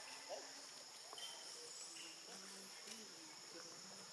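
Faint, steady high-pitched chorus of insects such as crickets or cicadas, with a few brief faint chirps and short tones over it.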